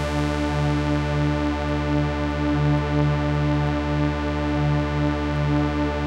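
Software-synthesizer trance lead of stacked detuned sawtooth oscillators (a Thor and Maelstrom Combinator patch in Reason 4) holding one long sustained tone, with a slight wobble from a modulation envelope routed to the filter.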